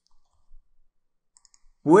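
A few faint, scattered computer mouse clicks in a quiet room; a man's voice starts near the end.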